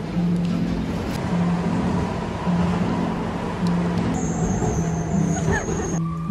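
A small yellow Budapest M1 metro train runs at the platform, its noise mixed under background music with a repeating low bass line. A high steady tone joins about four seconds in.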